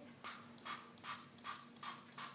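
Brain Blasterz candy spray pump sprayed into the mouth in a quick run of short hissing bursts, five of them, a bit more than two a second.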